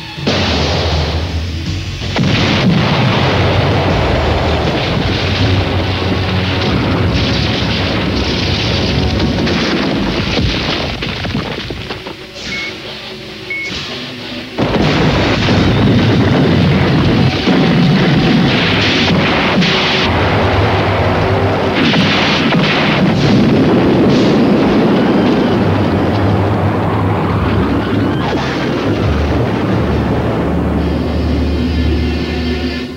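Cartoon action soundtrack: dramatic music under loud explosion sound effects. The booms ease off from about twelve seconds in and return abruptly a couple of seconds later.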